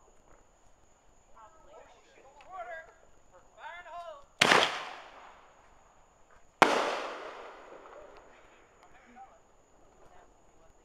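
Two loud firework bangs about two seconds apart, each echoing away over a second or two.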